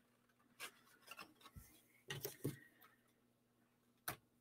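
Faint rustling and a few soft taps of hands handling and pressing a folded cardstock box.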